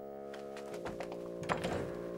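Background score holding a sustained chord, with a few light thuds about a second and a second and a half in.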